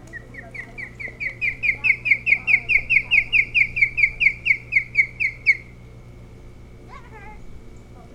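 Osprey calling: a fast series of about two dozen sharp, whistled chirps, four or five a second, growing louder over the first second or so and breaking off abruptly after about five and a half seconds.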